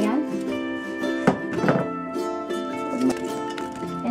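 Background music with plucked strings and held notes. Two short knocks come a little after a second in, as onion pieces are set down in the slow cooker's crock.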